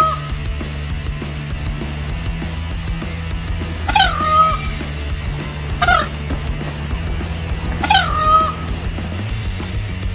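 Male Indian peafowl (peacock) calling three times, about two seconds apart: loud, sharp calls that drop quickly in pitch and then hold, the first and last longer than the middle one. Steady background music plays underneath.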